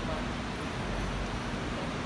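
Steady background noise of a large indoor playing hall, a constant low hum and hiss, with faint distant voices near the start and end. No ball strikes are heard.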